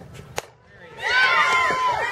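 A softball bat cracks against the ball, with a second sharp click a moment later. About a second in, spectators break into loud overlapping yelling and cheering, one high voice holding a long shout.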